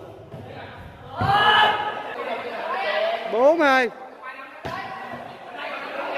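A volleyball rally on sand: the ball is struck hard about a second in, and men shout and exclaim over the play, with one long rising-and-falling cry in the middle. Another sharp hit on the ball comes near the end.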